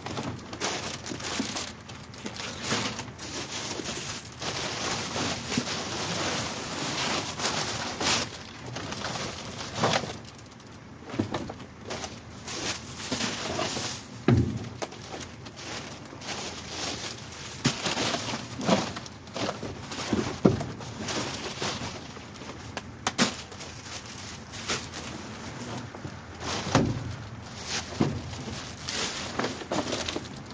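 Plastic bags crinkling and cardboard boxes scraping and bumping as bagged rubbish is rummaged through by hand, with a steady run of rustles and irregular knocks.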